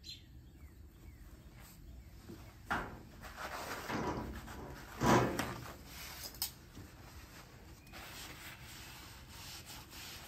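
Blue paper shop towels being handled and rubbed, rustling in a few short bursts, the loudest about five seconds in.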